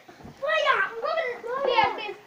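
Children's high-pitched voices, talking and calling out over one another for most of the two seconds.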